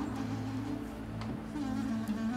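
Soft background score: a sustained, steady low drone, most likely string instruments, held under the silent pause.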